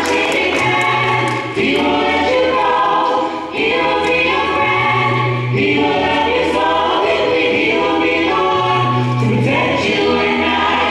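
Mixed vocal group singing gospel in close harmony through handheld microphones, the chords shifting every second or two, with a low bass note coming in about every four seconds beneath them.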